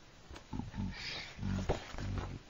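Three short, low voice sounds, grunt-like, about half a second apart, with a brief hiss in between and a sharp click near the end.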